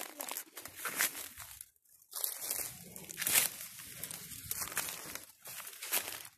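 Footsteps crunching through dry leaf litter and twigs, with leaves and scrub crackling and rustling in irregular bursts. There is a short lull about two seconds in.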